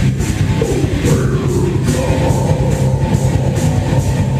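Heavy metal band playing live, loud: distorted electric guitars, bass and drums with a steady beat.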